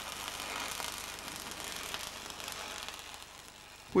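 Electric arc welding on structural steel: the arc gives a steady crackling sizzle with fine irregular pops, easing off slightly near the end.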